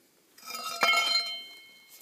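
Length of steel pipe clinking against the axle shaft and bearing as it is lifted off, then ringing with several steady tones that fade away over about a second.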